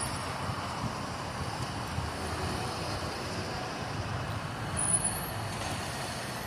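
Steady background rumble of distant traffic and rail activity, with no distinct events. A brief thin high-pitched squeal sounds near the end.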